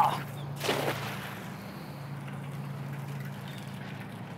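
A thrown cast net lands on the water with a brief splash about half a second in, fading within half a second. A low steady hum runs underneath.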